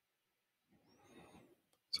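Near silence, broken only by a faint, brief noise about a second in; a spoken word begins at the very end.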